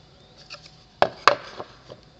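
Wooden craft pieces knocked and set down on a workbench: two sharp knocks about a second in, then a few lighter taps.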